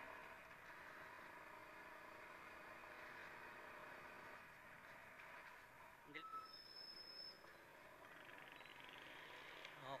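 Near silence: the faint, steady running and road noise of an RS125FI motorcycle being ridden, with a brief faint sound about six seconds in.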